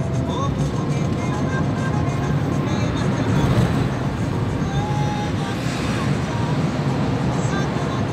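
Steady road noise heard inside a car moving at highway speed: a constant low drone of engine and tyres on the road.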